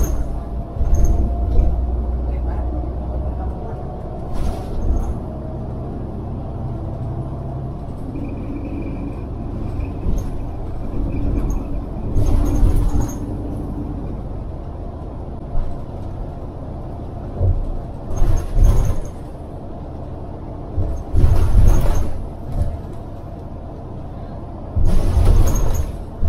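Ride inside a moving city transit bus: steady low engine and road rumble, broken by several short loud rattles or jolts, with a faint high whine for a few seconds near the middle.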